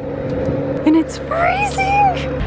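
Steady, even engine hum on an airport apron, with brief gliding vocal sounds near the end.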